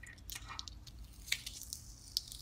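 Transfer tape being peeled off the paper backing of a cut vinyl decal: a faint, soft crackling, with one sharper click a little past halfway.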